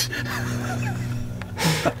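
Two men laughing softly with breathy, half-voiced laughs, ending in a sharp intake of breath near the end, over a steady low drone.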